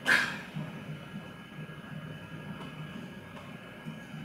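Room tone: a low steady hum with no speech, after the last spoken word trails off at the very start.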